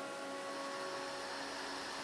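The last notes of an electronic keyboard's held chord fading away, leaving a faint steady hiss.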